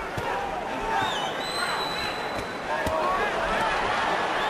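Boxing arena crowd: a steady din of many voices with scattered shouts. A single high whistle starts about a second in and holds for over a second, and a few sharp knocks come through.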